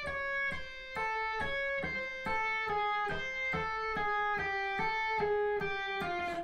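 Electric guitar playing a slow, even run of single notes legato with the fretting hand alone (hammer-ons and pull-offs, no picking), about three notes a second, gradually stepping down in pitch.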